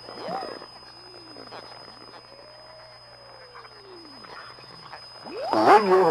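Shortwave radio reception between programme items: a faint hiss with a steady high whistle and several slow whistling tones that glide up and then down, the longest lasting about two seconds. An announcer's voice comes in near the end.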